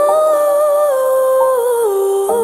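Slow ballad music with a wordless sung melody line: the voice rises to a held note, then steps down in pitch near the end.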